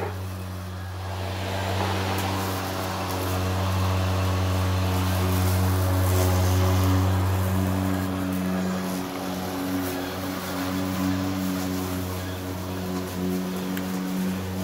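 Cordless electric lawn mower running steadily: a constant motor hum, a little louder in the middle of the stretch as it is pushed through the grass.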